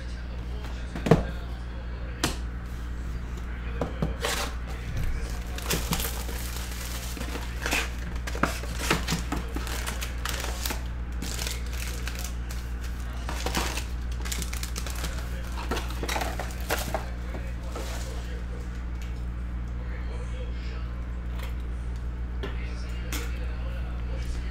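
Trading-card packaging being handled: a box of foil card packs opened, with plastic and foil wrappers crinkling and tearing in scattered short rustles and clicks. A steady low hum runs underneath.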